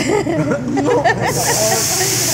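Liquid hitting a hot teppanyaki griddle: a loud hiss starts suddenly about a second in and keeps going as it flashes to steam.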